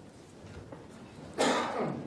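A person clearing their throat once: a single short, harsh burst about one and a half seconds in, against low room noise.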